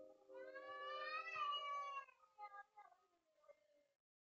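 A cat's long yowl played back through laptop speakers: one drawn-out call that rises and then falls in pitch, followed by a few short, fainter sounds.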